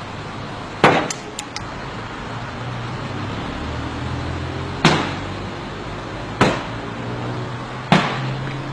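Four heavy blows struck on the body of a Mercedes-Benz S-Class saloon, about a second in, near five seconds, at six and a half and at the end, with light glassy clinks just after the first. Steady street traffic runs underneath.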